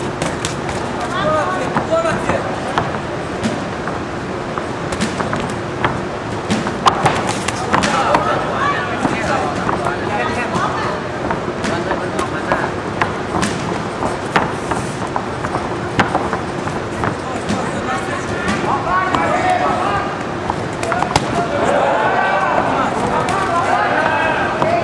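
Boxing-arena crowd: many indistinct voices shouting and calling out during an amateur bout, growing louder near the end, with scattered short sharp smacks and knocks.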